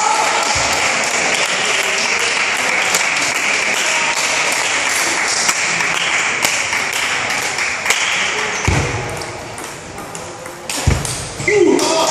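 Table tennis ball clicking off the table and the rubber bats in quick succession during play, with a couple of low thumps near the end.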